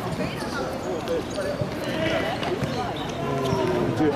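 People's voices over a small-sided football match, with thuds of the football being kicked.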